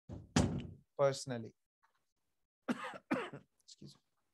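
A person speaking in short phrases, with a brief loud burst of noise, like a cough or a knock, about half a second in.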